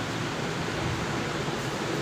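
Steady hiss of background noise, even and unbroken, with no distinct strokes or squeaks.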